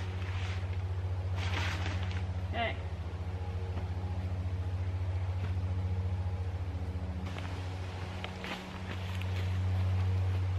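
A steady low engine-like hum with a fine rapid pulse, dipping briefly about eight and a half seconds in. A few short rustling sounds come in the first three seconds.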